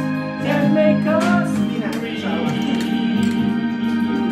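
Karaoke music: sustained organ-like chords with a voice singing over them, including a sliding vocal line about a second in.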